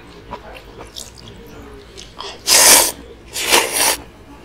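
A man slurping ramen close to a chest microphone: quiet small mouth sounds, then two loud slurps, about two and a half and three and a half seconds in.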